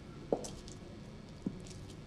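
Two slow footsteps on a hard garage floor, a bit over a second apart, each a short knock with a faint scuff after it, over a low steady hum.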